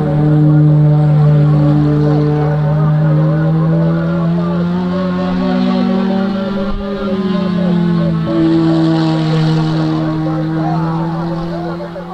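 Racing car engines running at high revs, their pitch held steady for long stretches with a rise and fall in the middle. They are heard through an AM radio broadcast, so the sound is thin, with no high treble.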